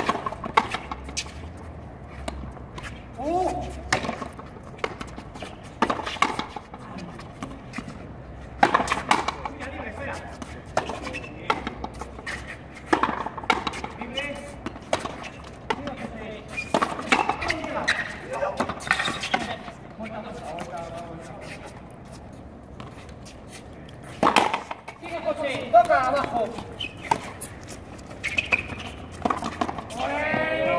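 Frontenis rally: a hollow rubber ball cracking sharply off strung rackets and the frontón's front wall, at irregular intervals. Indistinct voices between shots.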